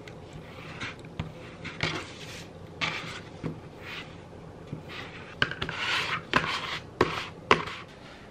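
Plastic squeegee scraping in repeated short strokes over self-adhesive laminate film on a paper sign, smoothing it down onto a cutting mat. The strokes grow longer and louder after about five seconds, and a few sharp knocks come near the end.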